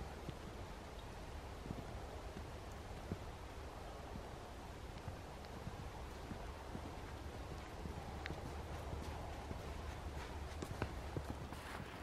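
Faint footsteps crunching in snow, a light irregular series of soft steps over a steady low background noise.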